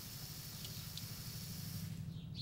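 Water hissing steadily out of an open test cock on a Febco reduced-pressure backflow preventer as it is bled, cutting off abruptly near the end.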